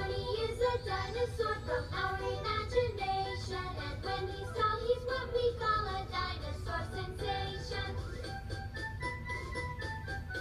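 Children singing a song with a bright, bouncy musical backing.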